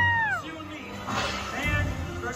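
A high, held yell that glides down in pitch and breaks off about half a second in. It is followed by quieter background music and faint voices.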